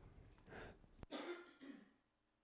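A man faintly clearing his throat with a few short, soft coughs, and a small click about a second in.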